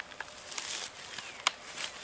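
Dry, rotten dead wood being worked apart by gloved hands: scattered crackles and rustles of bark and leaf litter, with one sharp crack about one and a half seconds in.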